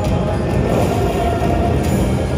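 Power Link slot machine playing its bonus-round music and rumbling reel-spin sounds as the empty positions respin during the hold-and-spin feature.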